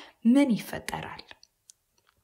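A short spoken syllable from the narrator, followed by a few faint clicks and then a pause with almost no sound.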